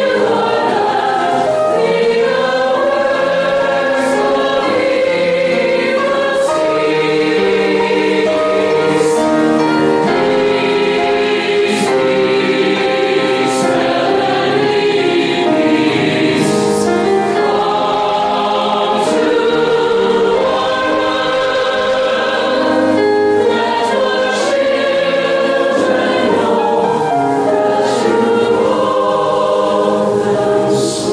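A mixed choir singing a held, slow-moving choral piece.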